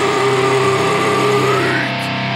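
Metalcore song in a break without drums: distorted electric guitars hold a sustained chord, and one pitch rises near the end.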